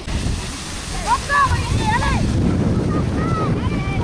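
Wind buffeting the camera microphone, a steady low rumble, with brief voices calling out about a second in, around two seconds in, and again near the end.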